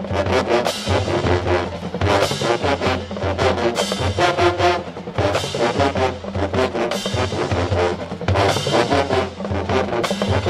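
Marching band playing a brass-heavy tune: sousaphones carrying a strong bass line under horn chords, with a steady drumline beat from bass and snare drums.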